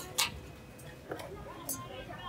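Kitchen scissors snipping through a grilled chicken on a metal platter: two sharp snips at the start, then fainter clicks, over background voices.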